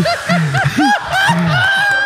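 Two men laughing into close microphones: a quick run of short chuckles, one voice drawing out a higher note near the end.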